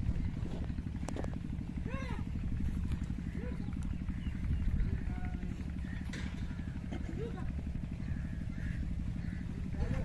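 An engine running steadily with a low, fast, even throb. A few short rising-and-falling calls sound over it, about two, three and a half and seven seconds in.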